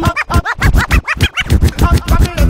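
Hip-hop DJ scratching on a Rane One controller's platter: a rapid run of short back-and-forth scratch sweeps, about six a second, cut over a loud beat.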